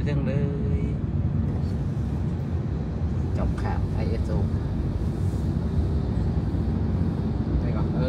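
Steady low rumble of tyre and engine noise inside a vehicle travelling at speed on a highway.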